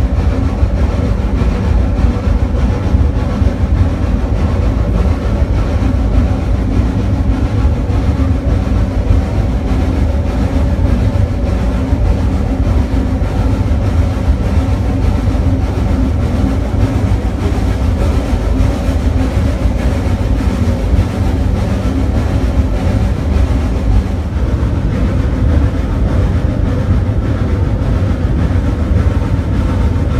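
Steam rack locomotive of the Snowdon Mountain Railway pushing its carriage uphill, heard from inside the carriage: a loud, steady low rumble of the engine and running gear.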